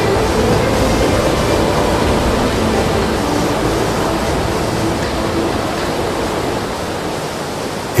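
Fast, muddy floodwater rushing in a wide river channel: a steady, even rush of water that eases off slightly toward the end.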